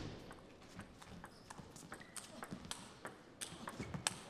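Table tennis rally: the celluloid-type ball clicking sharply off the rackets and table in an irregular quick series, a few hits a second.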